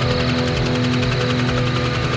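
Background music with steady held tones, and over it the fast, even chop of a medical helicopter's rotor flying past.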